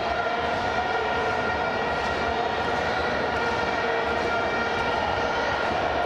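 Stadium crowd with a steady, unbroken drone of many vuvuzelas: several held horn notes sounding together without a break.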